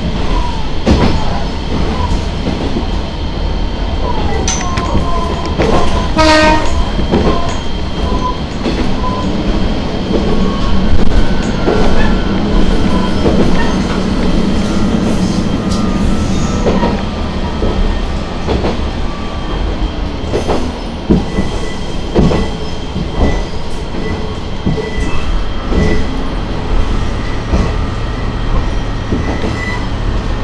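Diesel railcar running along jointed track, heard from the cab: a steady low running drone with irregular clacks of the wheels over rail joints. A short horn blast sounds about six seconds in, and a thin wheel squeal comes through a curve around the middle.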